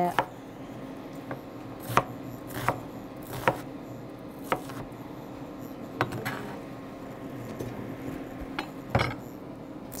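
Chef's knife chopping an onion on a plastic cutting board: single sharp knocks of the blade on the board, irregularly spaced about a second apart with quiet gaps between.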